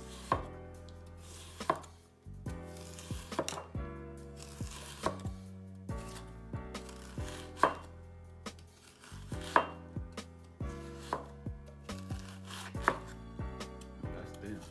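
Chef's knife slicing cabbage very thin on a bamboo cutting board: a sharp knock of the blade on the board every second or two, with smaller cutting ticks between.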